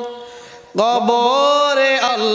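A man chanting Islamic zikir in long, drawn-out sung notes through a microphone. A held note fades away at the start, and a new long phrase begins a little under a second in, rising slightly in pitch.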